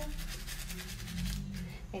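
A soapy nail brush scrubbing fingernails in rapid, scratchy back-and-forth strokes.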